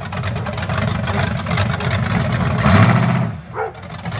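Lifted Chevrolet pickup's modified engine running steadily as the truck creeps along, swelling louder for a moment near three seconds in and then easing off. A dog barks once near the end.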